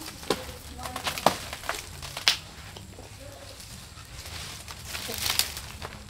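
Scattered sharp clicks and knocks, the first three about a second apart and more near the end, over a low rustling background.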